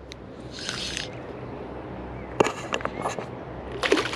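A small hooked jack pike thrashing and splashing at the water's surface while being played on a spinning rod. It starts as a soft wash, then a run of short, sharp splashes from the middle on, thickest near the end.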